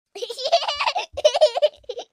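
High-pitched laughter, like a child's, in two bursts of quick 'ha-ha' pulses, used as an opening sound effect.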